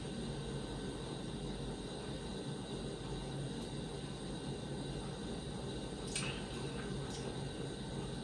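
Quiet room tone: a steady low hum and hiss, with a faint tick about six seconds in and a weaker one a second later.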